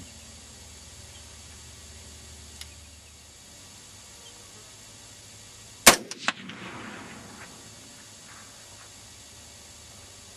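A single AR-15 rifle shot in .223 Remington about six seconds in, sharp and loud, followed by a brief rolling echo that dies away within about a second and a half.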